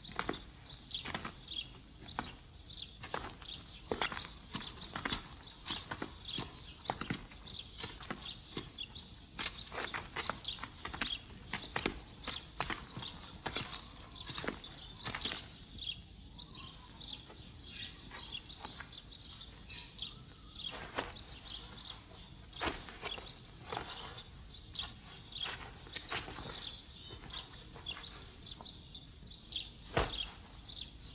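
Irregular footsteps and light knocks, sometimes about two a second, over a faint steady background noise.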